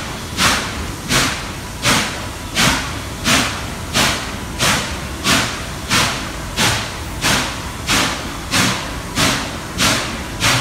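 Norfolk & Western 611, a J-class 4-8-4 steam locomotive, exhausting in a steady slow beat, about three chuffs every two seconds, each a sharp blast with a hissing tail. It is working a heavy train at low speed, and the beat stays even with no wheel slip.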